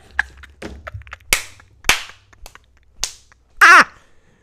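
A woman laughing hard: a few short, sharp, breathy bursts about a second apart, then a short high-pitched voiced laugh near the end.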